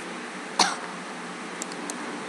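A single short cough about half a second in, over a steady background hiss.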